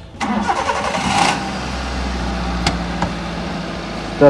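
A small hatchback car's engine starting up, running a little louder for about a second, then settling into a steady idle. Two light clicks come late on.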